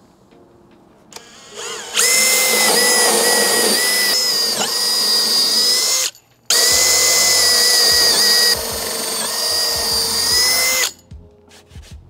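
Power drill with a long 3/8-inch bit boring through plywood and solid wood blocking. A steady high whine runs for about four seconds, stops briefly, then runs again for about four seconds, with the pitch dipping for a moment as the bit bites.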